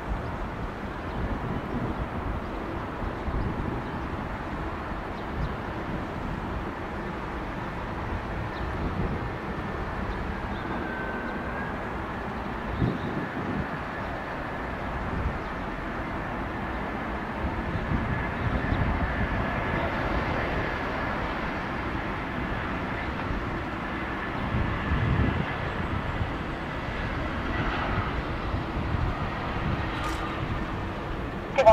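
Airbus A320's CFM56 jet engines on final approach, a steady jet whine and roar that grows somewhat louder in the second half as the airliner comes closer. Wind buffets the microphone throughout.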